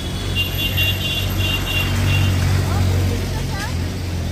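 Steady low rumble of street traffic, with indistinct voices of passers-by in the second half.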